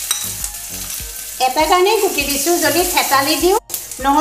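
Sliced garlic hitting hot oil in an aluminium kadai and sizzling as it fries, stirred with a metal spoon. A singing voice comes in over it about a second and a half in.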